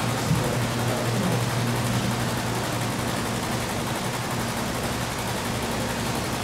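Steady background hiss with a low hum beneath it, with no distinct events.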